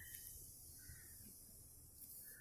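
Near silence: faint scratching of a felt-tip pen drawing strokes on paper.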